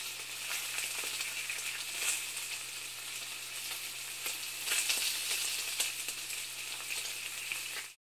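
A steady crackling hiss, like sizzling or record-crackle static, with many small scattered clicks over a faint steady low hum. It cuts off abruptly at the very end.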